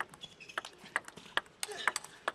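Celluloid-type table tennis ball clicking off rackets and the table in a fast rally, about eight sharp clicks in two seconds.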